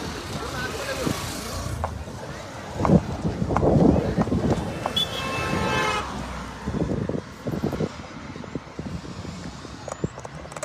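Roadside recording of indistinct voices and passing road traffic, with a loud rush of noise from about three to five seconds in.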